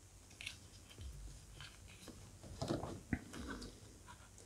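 Faint handling of a vintage Kenner Ben Kenobi action figure: light plastic clicks and rustling of its cloak as it is turned and swapped for a second figure, busiest about three seconds in with one sharper click.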